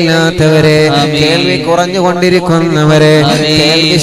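A man's voice chanting a melodic Islamic supplication (du'a) into a microphone, with long held, gliding notes over a steady low sustained tone.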